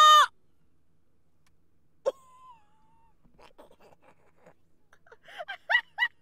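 A woman's loud, high-pitched squeal, held briefly at the very start. Near the end she breaks into short stifled bursts of laughter.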